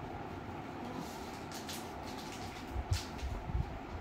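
Steady low background rumble with cloth rustling as a satin garment is pulled down a patient's back, and a few soft thumps and a click in the second half.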